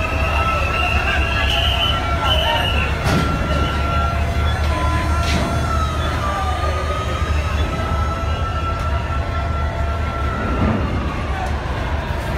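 Steady low engine rumble of a large passenger river launch getting under way, with a long high steady tone over it that stops about ten and a half seconds in. Scattered voices carry in the background.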